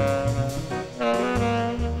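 Jazz septet recording: saxophone and brass horns playing a chordal line over bass. There is a brief lull just before the middle, then a new horn chord comes in.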